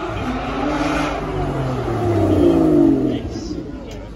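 Car engine accelerating, its pitch climbing as it gets louder, peaking about three seconds in and then fading as the car moves off.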